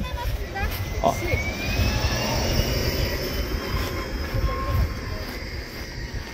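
A distant engine drone that swells over the first few seconds, its pitch slowly rising, then fades, over a low rumble of wind on the microphone.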